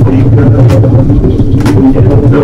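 Improvised noise music: a loud, dense low drone with a rough, gritty texture and scattered short crackles over it.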